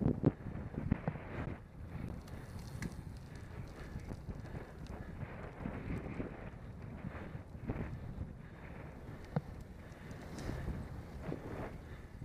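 Wind buffeting the microphone of a camera riding on a road bicycle, over the low rumble of tyres on asphalt, with scattered light clicks and knocks.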